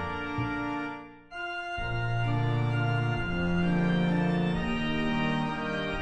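Portable suitcase reed organ playing sustained chords. It fades away about a second in, then a new chord swells up and is held, moving on to further chords.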